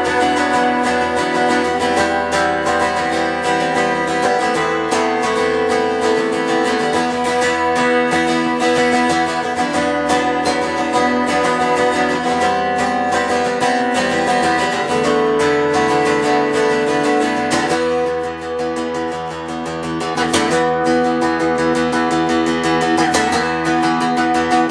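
Acoustic guitar strummed in a steady rhythm with no singing, chords ringing between the strokes; the playing drops back briefly about eighteen seconds in, then picks up again.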